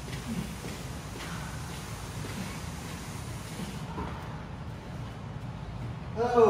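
Heavily loaded push sled, stacked with weight plates, sliding over artificial turf: a steady low scraping rumble whose upper hiss dies away a little over halfway through as the sled comes to a stop.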